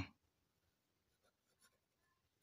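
Faint scratching of a pen writing on paper, a few short strokes in the second half, against near silence.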